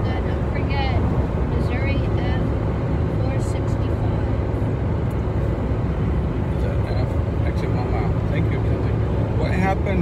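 Steady road and engine noise inside a car cabin cruising at highway speed, a low, even rumble of tyres on pavement.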